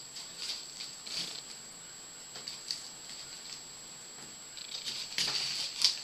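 A knife cutting and prying into a soil-covered yacon crown, with faint scattered crackling and scraping of roots and soil. It gets busier near the end, with a couple of sharp clicks.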